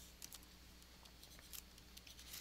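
Near silence, with a few faint clicks and scratches of a pen stylus on a drawing tablet as a number is struck out.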